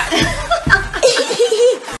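A woman laughing and calling out. A drawn-out vocal sound comes in the second half and cuts off suddenly.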